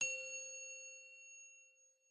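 A single bell-like chime sound effect for a logo reveal, struck once and ringing with several clear tones that fade away over about a second and a half.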